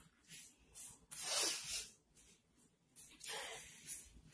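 Two soft hissing noises, each just under a second long, about a second in and near the end, with fainter brief hisses just before the first.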